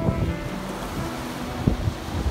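Small sea waves washing and splashing against a rocky shore, with wind on the microphone. Soft music plays faintly underneath.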